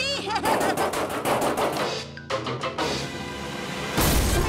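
A rapid rattle of knocks, about eight a second, over background music, breaking off briefly about two seconds in, then giving way to a steady rushing noise near the end.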